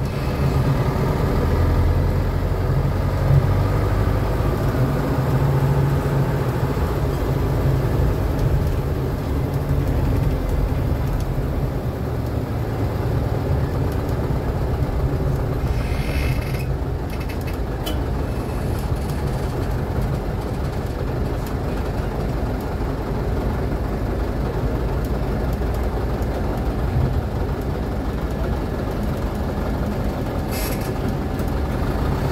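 Bus engine running as the bus drives along, a steady low rumble heard from inside the cabin. A brief hiss comes about halfway through as it slows at a gate.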